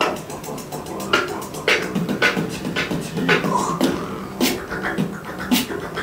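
Beatboxing: sharp vocal drum hits about twice a second in a steady groove, over a held low hum.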